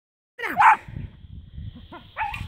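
A dog giving a short excited yelp and bark about half a second in, then only low background rumble.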